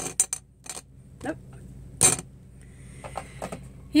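Makeup brushes being put away, clinking and clicking against each other and their holder in a series of sharp, separate clicks, the loudest about two seconds in.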